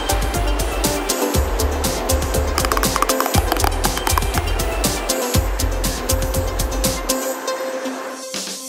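Instrumental background music with a steady beat and a heavy bass line; the bass drops out near the end.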